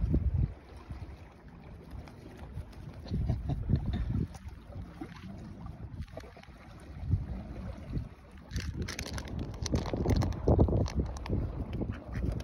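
Wind buffeting the microphone in uneven gusts, a low rumble that swells about three seconds in and again, stronger, from about eight and a half seconds on.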